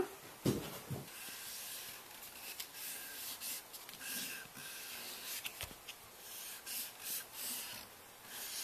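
Tip of an acrylic paint marker rubbing across paper in a run of soft, uneven drawing strokes.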